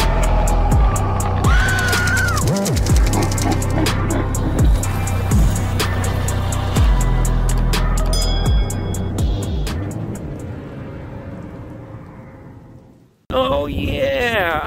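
Intro music with a heavy, steady bass beat and voice-like sound effects over it. It fades out over the last few seconds, and a man starts talking just before the end.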